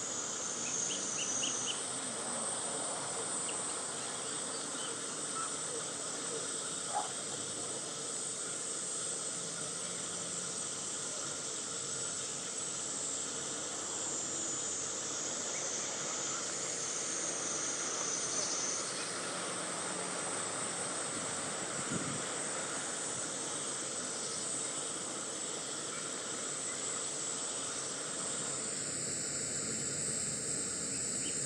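Insects calling steadily in a high, continuous buzz that rises and falls slightly in strength, over a steady outdoor background hiss.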